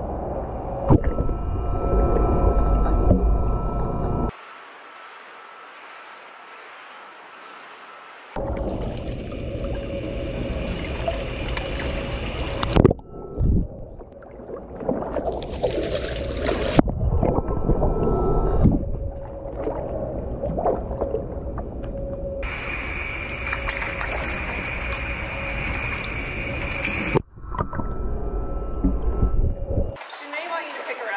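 Water sloshing, splashing and gurgling in a small pool as a penguin chick swims past a camera at the waterline, sounding muffled where the water covers the microphone, over a steady hum. The sound changes abruptly several times, with a quieter stretch a few seconds in.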